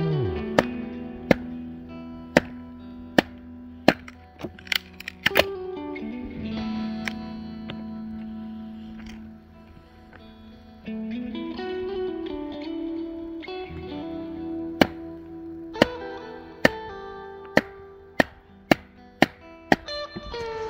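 A hatchet being driven into a stick of wood with a round wooden baton to split it: sharp knocks, a run of them over the first five seconds, then a pause, then a quicker run in the last five seconds. Guitar music plays under them throughout.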